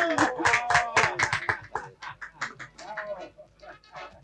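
A small group of men clapping, with voices calling out. The applause is dense for about the first two seconds, then thins to scattered claps.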